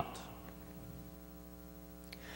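Steady electrical mains hum with a ladder of even overtones, well below the level of the voice, left bare in a pause between spoken sentences.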